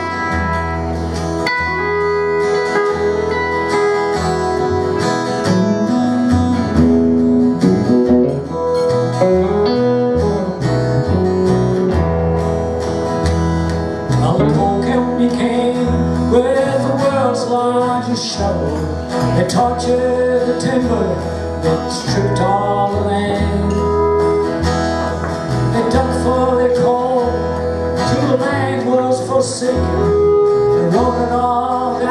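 Small live band of electric guitar, acoustic guitar and upright double bass playing a country-folk song at a steady tempo.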